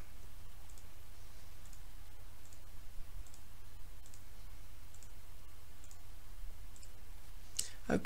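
Faint computer mouse button clicks, about one a second, paging through a book preview, over a low steady hum.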